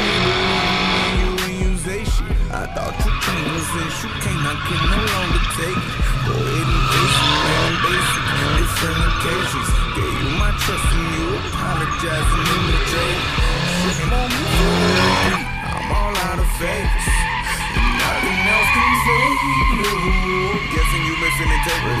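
Tyres skidding and engines revving as vehicles do burnouts and drift, mixed with a hip-hop music track that has a steady bass beat.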